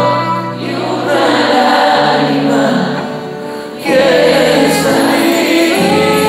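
Live band music with several voices singing together over guitar and keyboard; it dips a little and then comes back louder about four seconds in.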